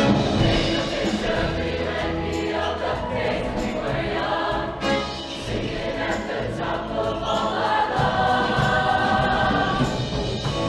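Mixed show choir singing in parts over instrumental accompaniment with a steady bass line.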